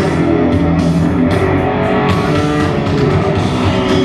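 Heavy rock band playing live through a stadium PA, an electric guitar leading over bass and drums with no vocals, heard from far back in the crowd.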